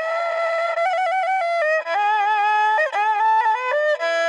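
Background music: a single melody line with no bass, its notes moving in quick steps up and down with short ornaments.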